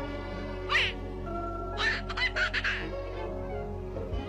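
Cartoon duck quacking over orchestral cartoon music: one quack under a second in, then a quick run of short quacks about two seconds in.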